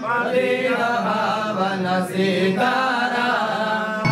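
Sanskrit mantra chanting by voice, a continuous melodic recitation with a brief pause for breath about two seconds in.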